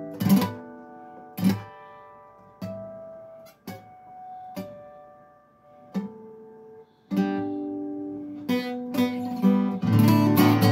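Acoustic guitar harmonics, plucked one at a time, each chiming note ringing out and fading before the next, about one a second; a quicker run of notes comes near the end.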